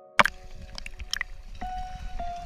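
Water sloshing and splashing right at an action camera held at the water's surface, as swimmers wade through shallow water. It opens with a single sharp click, followed by a steady low rumble of moving water and a few short splashes about a second in.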